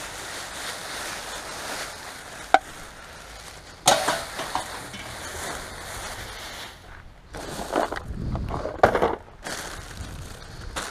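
Plastic rubbish bags rustling and crinkling as they are pulled about and rummaged through inside a plastic wheelie bin, with a sharp click a couple of seconds in, a louder knock just before the middle and a few more rough bursts of handling near the end.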